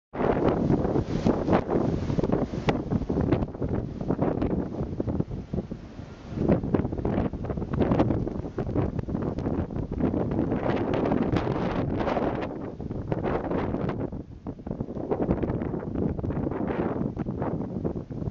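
Wind buffeting the microphone in uneven gusts over a Kubota HST tractor running as it clears deep snow.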